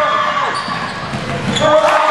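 Basketball dribbled on a gym floor, several bounces, with voices in the hall.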